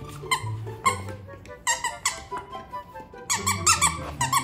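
Squeaker inside a plush boba-tea dog toy squeaking again and again as it is bitten and squeezed: short squeaks in quick runs, fastest near the end, over background music.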